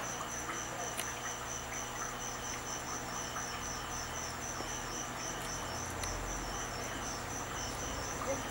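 Insect chirping: a high-pitched pulse repeating evenly about five times a second, over a faint low hum.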